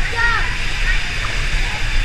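Steady sloshing and splashing of pool water, with a brief high-pitched call from a voice shortly after the start.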